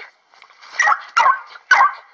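A small dog barking three times in quick succession, about half a second apart, starting just under a second in.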